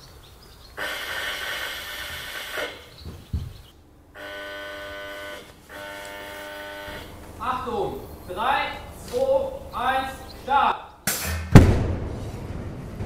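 A steady signal tone sounds twice in the middle. Near the end comes a single loud explosion, followed by a rumble: a test vessel's rupture disc bursts open and vents the explosion's pressure as a fireball.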